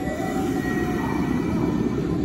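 Nankai 7100-series electric train pulling slowly into the platform. Its wheels and running gear give a steady low rumble, with a faint high whine over it.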